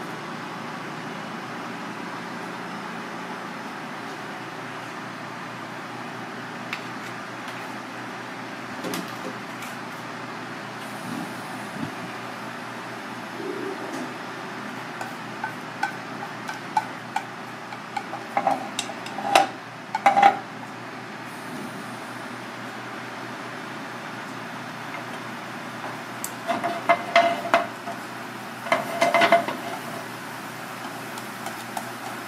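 A wooden spatula stirring minced aromatics in a frying pan, knocking against the pan in two clusters of sharp, briefly ringing taps in the second half, over a steady hiss.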